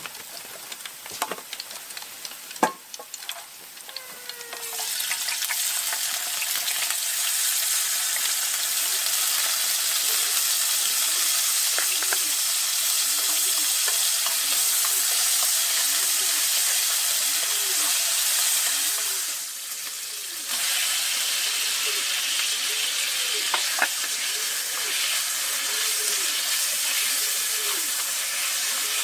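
Chopped garlic frying in hot oil in a pan: a loud, steady sizzle that starts suddenly about five seconds in, after a few light knocks and clatters. It drops away for about a second about two-thirds of the way through, then comes back.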